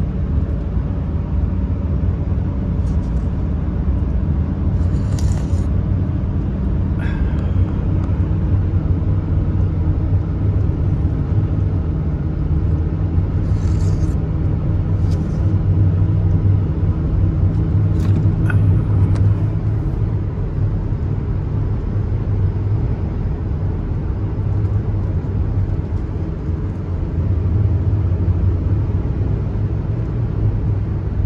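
Steady low rumble of engine and road noise inside a vehicle's cabin while driving along a highway, with a few short high ticks scattered through it.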